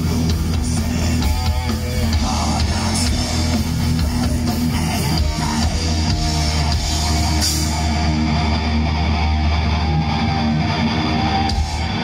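A thrash metal band playing live and loud: distorted electric guitar, bass and drum kit. In the last few seconds a single guitar note is held and sustained.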